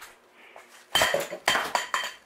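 Glass jars and bottles clinking in a refrigerator as its door is pulled open: three sharp clinks with a bright ringing tone, between about one and two seconds in.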